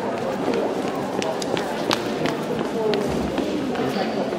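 Steady background chatter of many voices in a large hall, with irregular sharp taps and the footfalls of handlers running Afghan hounds around the ring.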